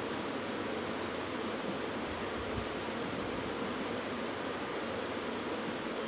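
Steady, even hiss of background room noise with no distinct events.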